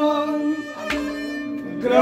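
A bowed folk fiddle of the sarangi kind holding a steady note between sung phrases, with a brief click about halfway through. Near the end a man's singing voice slides back in over it.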